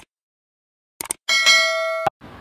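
Two quick clicks, then a bright bell chime that rings on with many overtones and slowly fades: the click-and-notification-bell sound effect of a subscribe-button animation.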